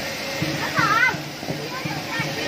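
Children's voices and chatter at play, with one child's high-pitched shout about a second in, over a steady hiss of spraying water.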